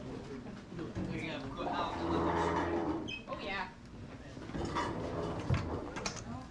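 Indistinct voices of several people talking at once, with a few knocks and handling noises.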